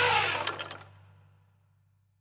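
The cartoon soundtrack's closing sound effect: a low buzzing tone under higher sounds that glide in pitch, dying away within about a second, then silence.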